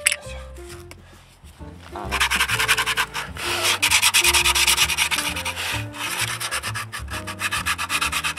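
Sandpaper rubbed rapidly back and forth over the edge of a new disc brake pad to chamfer it, the step that keeps the pad from squealing. The rubbing starts about two seconds in and keeps going as fast repeated strokes.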